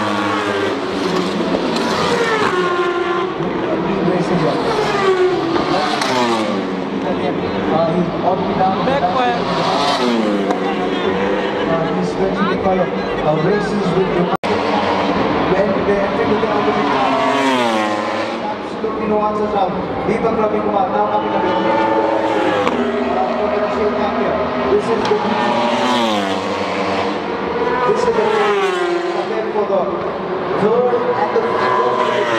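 Racing engines running at high revs as vehicles pass along the track one after another. Each passes with a falling pitch, and the engines rise again through the gears. A short break about halfway through marks a cut.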